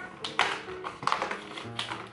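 Soft background music with a few light taps and clicks of fingers on a cardboard advent calendar as one of its little doors is pried open.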